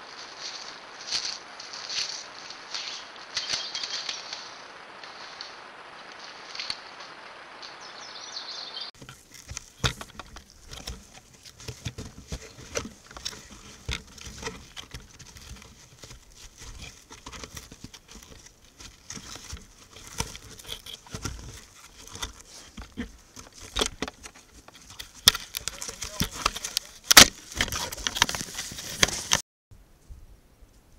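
Footsteps of a person walking over rocky, grassy ground with a steady hiss behind them, then, after a cut about nine seconds in, irregular crunching footsteps in snow, the loudest crunch coming near the end.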